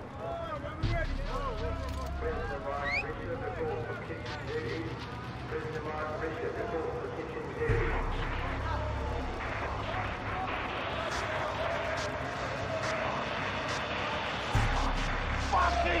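A crowd of men calling out and jeering, many voices overlapping with no single clear speaker. A deep low rumble swells in three times: about a second in, about halfway through and near the end.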